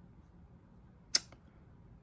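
Quiet room tone broken by a single sharp click about a second in, with a faint second tick just after.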